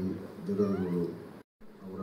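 Speech only: a man speaking into a microphone, the sound cutting out completely for a moment about a second and a half in.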